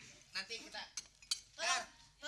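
Two short clinks of tableware, a plate or glass on a cafe table, about a second in and a moment later, among bits of voices.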